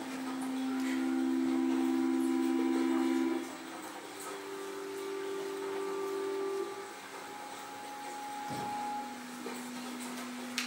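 Long, steady held tones in the middle register, two sounding together and changing to new pitches every three or four seconds, making a slow drone.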